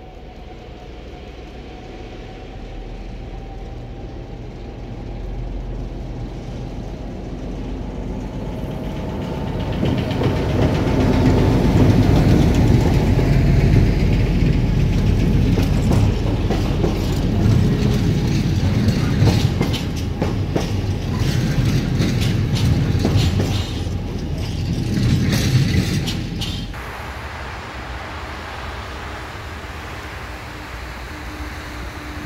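ST44 diesel locomotive (Soviet-built M62) with its two-stroke V12 engine running, growing steadily louder as it approaches and passes close by. Its train of empty flat wagons follows, rolling past with a rapid clatter of wheels over the rail joints. The sound drops off suddenly a few seconds before the end.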